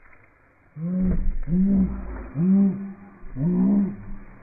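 A series of about five low-pitched vocal calls, each rising and then falling in pitch, coming in quick succession after a short quiet start.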